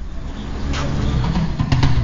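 Low, steady rumble of a vehicle engine, with a few sharp clicks near the end.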